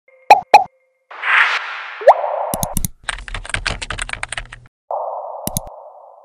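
Sound effects of a news channel's logo intro: two sharp pops, a whoosh with a quick rising blip, a run of rapid typing-like clicks, then a hiss that fades out.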